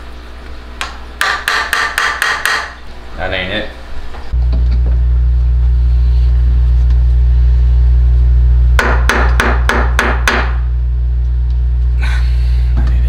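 A hammer striking in quick runs of about six sharp blows in a second and a half, twice. A loud, steady low drone sets in about four seconds in and runs under the second run of blows.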